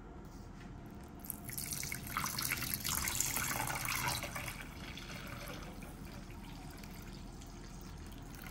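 Water poured in a thin stream from a plastic sachet into a bowl of powdered milk and sugar, splashing loudest about two to four seconds in, then settling to a quieter trickle as the bowl fills.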